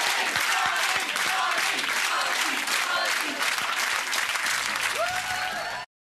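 Studio audience applauding, a dense steady clatter of many hands, with voices calling out over the clapping; it cuts off abruptly near the end.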